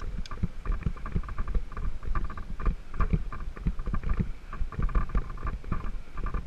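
Mountain bike rattling and knocking over a rough, rutted sandy dirt track, with many irregular clicks and low thumps as the wheels hit the bumps.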